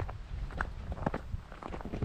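Footsteps of a person walking on a mountain trail, about two steps a second, over a low rumble of wind on the microphone.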